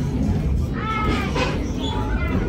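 Steady low rumble of a passenger coach rolling along the track, with a brief high, wavering squeal about a second in and another shorter one near the end.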